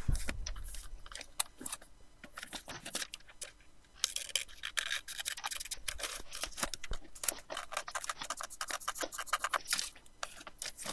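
A sheet of paper being folded in half by hand: a few light rustles at first, then from about four seconds in a dense run of rustling and scraping as the fingers press and slide along the crease.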